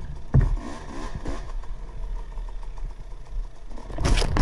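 KTM 300 XC-W two-stroke dirt-bike engine running at low revs, with a few quick throttle blips in the first second and a half and a low clunk just before them.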